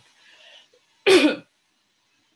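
A woman clearing her throat once, a short hard rasp about a second in.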